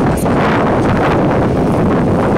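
Wind buffeting the microphone: a loud, steady rumbling noise.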